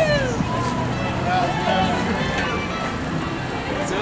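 Boombox music playing among a passing group of cyclists, with people's voices calling out over it.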